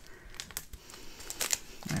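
Plastic crinkling as hands handle a small bag of diamond painting drills on a film-covered canvas, with a few sharper crinkles about one and a half seconds in.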